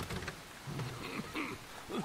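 Steady rain falling.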